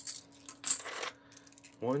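Small plastic game chips clicking together and onto a tabletop as they are handled and counted out: a few sharp clicks, then a short rattle of chips about half a second in.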